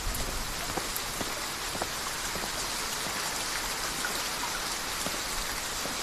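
Steady rain falling, with scattered drops ticking on nearby surfaces.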